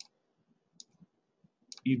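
A few faint, separate computer mouse clicks, about four in two seconds. A man's voice comes in near the end.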